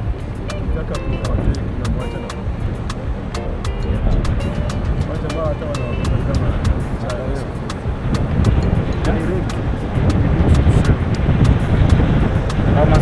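Low rumble of a car driving on a paved road, with music over it: a quick, steady beat and a voice singing or talking.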